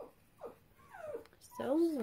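Dogs whining, with three or so short whimpers that fall in pitch.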